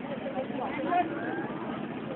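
Many voices talking at once, none clear, over a steady background noise, with one or two louder voice fragments about a second in.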